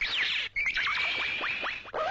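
Electronic sound effect: a rapid series of falling synthesized zaps, with a steady high tone held through the middle of it and a brief break about half a second in.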